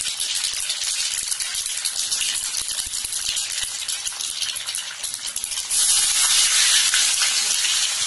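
Hot oil sizzling and crackling in a stainless steel pan on a gas stove. About six seconds in the sizzle jumps louder as finely chopped onions go into the oil and start to fry.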